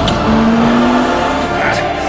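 Car engine revving, its pitch rising slowly for about a second, mixed over trailer music.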